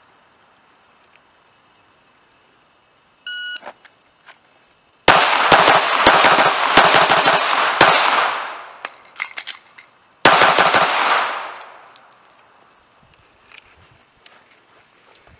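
An electronic shot timer beeps once, the start signal of a timed drill. About two seconds later a Glock 19 9mm pistol fires a rapid string of shots, and after a pause of about two seconds a second, shorter string follows; each string trails off in echo.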